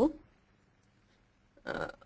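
A lecturer's spoken word trails off, then after a pause of more than a second comes one short, breathy vocal noise from the same speaker, a breath or throat sound, before he speaks again.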